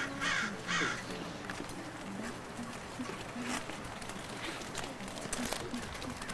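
Three short, harsh bird calls in quick succession in the first second, then faint scattered background sound.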